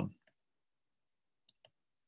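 Two faint, quick clicks about a second and a half in: a stylus tapping on a tablet screen while handwriting.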